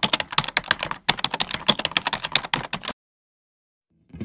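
Fast, irregular keystrokes of typing on a keyboard, with a short pause about a second in, stopping about three seconds in.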